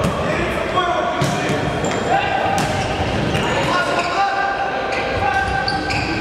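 Bagpipe music: long held reedy melody notes that change pitch every second or so, with a few sharp knocks.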